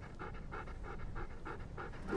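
A Samoyed dog panting rapidly and steadily, about five breaths a second.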